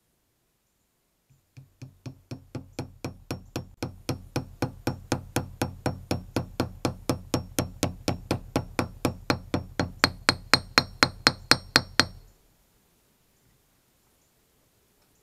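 Hammer tapping a grease seal into a trailer wheel hub: a quick, even run of taps, about three or four a second, growing steadily louder and taking on a higher ring near the end before stopping.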